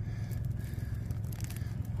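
Fingers scraping and loosening gravelly dirt and small stones in a sediment bank, with short scratchy rasps and little clicks of grit, over a steady low rumble.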